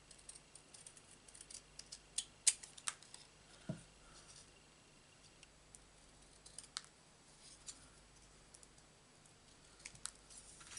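Scissors snipping thin cardstock, a quick run of small cutting clicks in the first few seconds and a few more later on. There is a soft knock a little before the middle.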